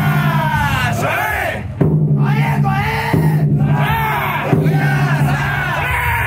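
Crowd of float bearers chanting together in long repeated calls over the steady rapid beat of the festival float's taiko drum.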